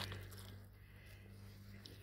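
Faint squelching and trickling of a running garden hose pushed down into waterlogged clay soil, the water soaking into the trench backfill to settle and compact it.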